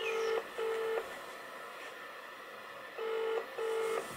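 Telephone ringback tone through a smartphone's loudspeaker. It rings twice in the double-ring pattern, each ring a pair of short beeps, with a pause of about two seconds between the rings. The call is ringing and has not been answered.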